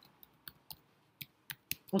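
Computer keyboard typing: about eight light, irregularly spaced key clicks.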